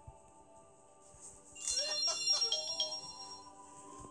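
Soft background music from a cartoon story app: faint held tones, then a bright run of chiming, ringtone-like notes about a second and a half in that fades over the next two seconds.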